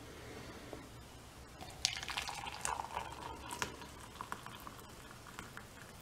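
Hot water poured from a stainless-steel electric kettle into a ceramic mug over a chamomile tea bag: a faint trickle and splash of filling liquid, mostly in the middle seconds.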